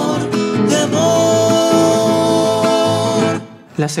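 Four-part male vocal harmony, one singer multitracked, with nylon-string classical guitar, singing the closing chorus phrase of the Argentine folk polka and holding its final chord. The chord cuts off about three and a half seconds in, and a man starts speaking just before the end.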